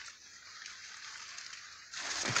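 Faint rustle of cacao leaves and branches as a hand reaches in to pick a pod, over a low steady hiss.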